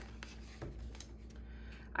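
Faint rustling of a paper planner insert being handled, with a few light scissor snips as its punched ring holes are slit open.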